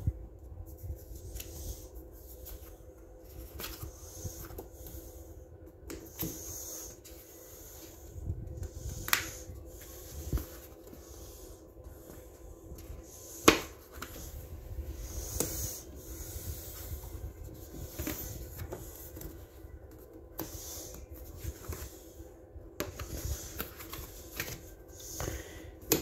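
Handling of coloring-book paper pages and the phone: soft rustling and rubbing with scattered clicks and knocks, the sharpest about halfway through, over a faint steady hum.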